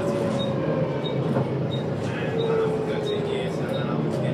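Interior ride noise of a Volvo B7TL double-decker bus on the move, heard from the upper deck: a steady low engine and road drone with a thin drivetrain whine that falls slowly in pitch, and occasional light rattles from the body.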